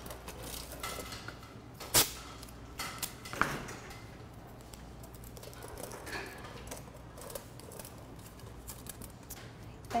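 Aluminium foil and a cardboard box being handled and pressed down: faint rustling and crinkling with a few sharp clicks, the loudest about two seconds in.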